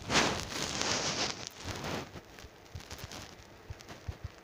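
Crackling rustle of a crumpled foil-paper sheet being handled, loudest in the first second and a half. It then breaks up into a few faint scattered clicks.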